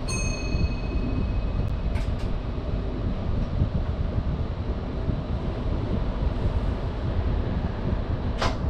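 Cab of an NS VIRM double-deck electric train with a steady low rumble as it pulls away slowly. A single ringing chime of several pitches sounds at the start and fades within about two seconds, and a short hiss comes about two seconds in.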